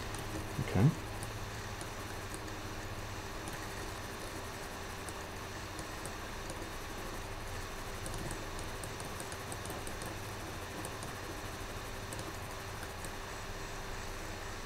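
Steady room tone: a low electrical hum under a soft hiss, with a few faint scattered ticks.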